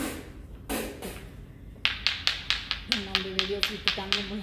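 Two small stones tapped together in a quick, even rhythm of about five sharp clicks a second, starting about halfway through, with a woman humming a steady note over them from near the three-second mark. Two short hissing blows come first.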